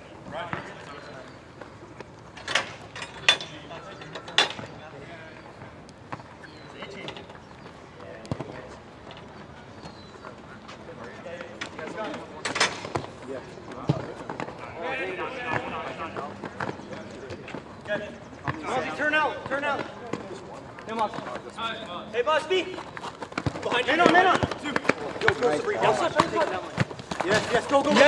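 Soccer ball being kicked on an arena court: a few sharp thuds in the first five seconds and another a little before halfway. Players' shouts and calls grow louder toward the end.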